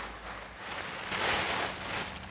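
Soft rustling as the next item of clothing is pulled out and handled, swelling about a second in and then fading.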